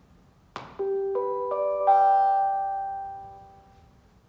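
Public-address chime: a click, then four bell-like tones rising step by step about a third of a second apart, ringing on together and fading away.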